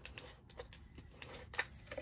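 A Stampin' Seal adhesive tape runner being rolled along paper to lay down adhesive, giving a faint string of short, irregular clicks.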